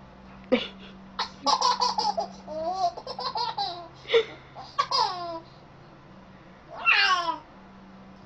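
A baby laughing and squealing in a string of short, high-pitched bursts with quiet gaps between, several of them falling in pitch; a longer, louder squeal comes about seven seconds in.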